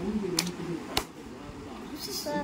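Two sharp clicks about half a second apart, playing cards being handled and put down on a hard floor, with a low voice over the first of them.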